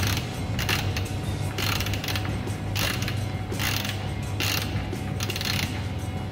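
Hand ratchet with a 17 mm socket clicking in short runs, about one a second, as an oil-pan drain plug is run back in and tightened down.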